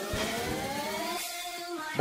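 Background electronic workout music, with held synth notes and a slowly rising tone sweeping upward.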